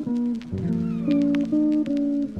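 Background music: a guitar-led tune of held notes and chords, with a few notes that slide in pitch.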